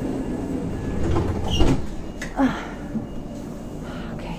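Cabin noise inside a Sprinter stopping train: a steady low rumble, with a heavier thump about a second and a half in.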